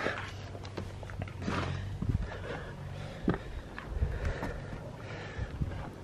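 Irregular footsteps, scuffs and a few sharp knocks of a person climbing steep steps.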